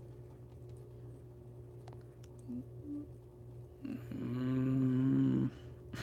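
A man's low, drawn-out groan lasting about a second and a half near the end. Before it come a few faint clicks of small LEGO plastic parts being handled, over a steady low hum.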